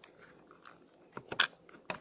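A few small sharp clicks as a power plug is pushed into the back of an Android TV box while the cables around it are handled. The clicks come from about a second in, the last and sharpest near the end.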